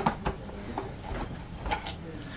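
A few light, scattered clicks and taps from a screwdriver and hands working on the plastic housing of a vacuum powerhead while its screws are being removed.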